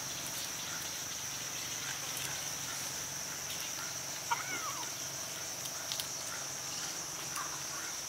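Steady high-pitched drone of insects. About four seconds in, a short call rises and falls once, with a few faint ticks scattered through.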